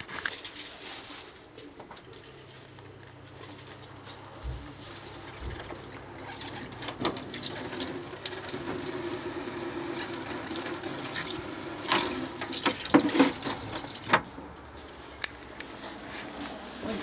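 Water running from a caravan's hand shower into a plastic shower tray, with a few sharp knocks near the end, then cutting off about two seconds before the end.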